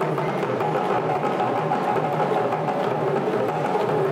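Live West African hand-drum ensemble, djembes among them, playing a steady, dense dance rhythm.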